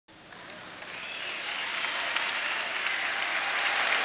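Audience applause fading in from silence over the first second or so, then holding steady.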